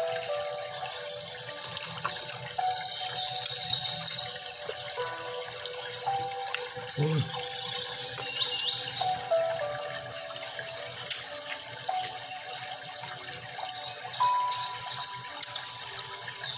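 Soft background music of held, slowly changing notes, with quick bird-like chirps running over it.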